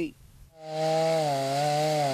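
Gas chainsaw running at a steady high pitch as it cuts through a fallen pine trunk, the pitch sagging slightly under load. It starts about half a second in.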